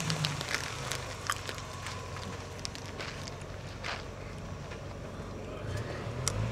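Engine of a lifted Toyota off-road SUV running low and faint while it backs down a rock, with scattered sharp clicks and scuffing steps close to the microphone.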